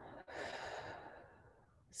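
A woman's deliberate deep exhale, heard as a breathy rush of air that starts about a quarter second in and fades out by about a second and a half.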